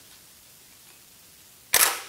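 Canon EOS 6D DSLR taking a picture: one sharp mirror-and-shutter clack near the end.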